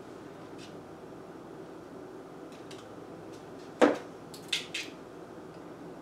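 Thin floral wire being handled and cut: a few faint clicks, then one sharp snip a little under four seconds in, followed by two lighter clicks.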